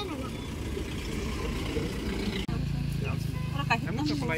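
Outdoor roadside sound with murmuring voices; about halfway through, a motor vehicle engine starts to be heard running steadily, and a brief voice comes near the end.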